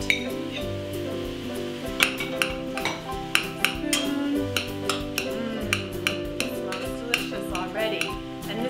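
A metal spoon repeatedly clinks and scrapes against a steel saucepan and a ceramic plate as chunks of cooked squash are scraped into the pot and stirred, with sharp irregular clicks several times a second. Background music with sustained notes plays throughout.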